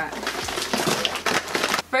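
Bubble wrap crinkling and cardboard rustling as a packed shipping box is tipped out and emptied, a dense run of irregular crackles that stops abruptly just before the end.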